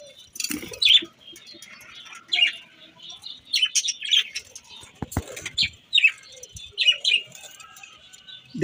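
Budgerigars chirping in an aviary colony: short, high chirps scattered throughout, with a dull knock about five seconds in.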